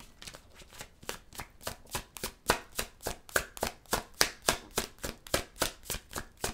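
A tarot deck being shuffled by hand, the cards slapping together in a quick, even rhythm of about three or four strokes a second. The strokes start faint and grow louder after about a second.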